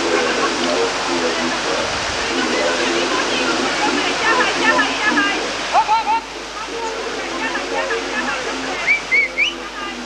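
Whitewater rushing steadily down a rocky slalom course, with spectators' voices over it and a few sharp higher-pitched shouts, around the middle and again near the end.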